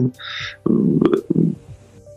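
A man's short breath, then a low, creaky hesitation sound from his throat, followed by a brief pause in his talk.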